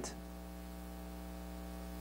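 Steady electrical mains hum from the microphone and sound system, a low even hum with buzzy overtones.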